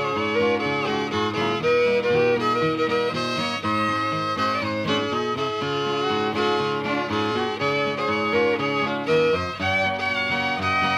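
Old-time fiddle tune in D, a march, played on fiddle with acoustic guitar accompaniment, running as a continuous stream of bowed notes.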